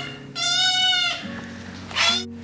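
A black kitten meows: one long, high-pitched meow, with a second one starting near the end.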